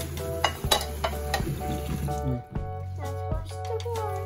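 Background music throughout, over running tap water and a few clinks of dishes and cutlery in a stainless steel sink; the water sound stops about halfway through.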